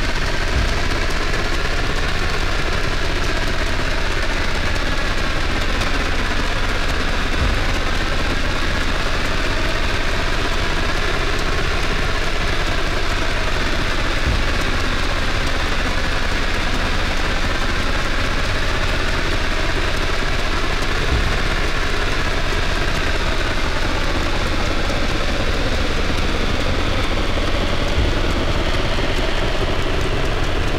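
Live modular synthesizer improvisation: a dense, noise-like electronic drone with slowly wavering pitch bands and a deep thud about every seven seconds.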